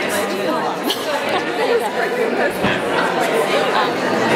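Crowd chatter in a large hall: many people talking at once, with no single voice standing out.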